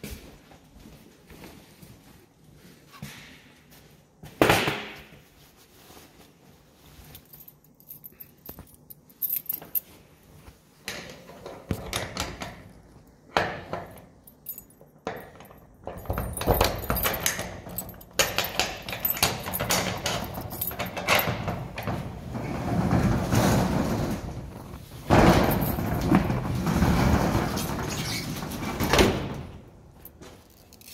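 A corrugated steel roll-up storage-unit door being unlocked and raised. It makes a long, loud rattle through most of the second half, loudest a few seconds before the end. Scattered clicks and knocks come before it.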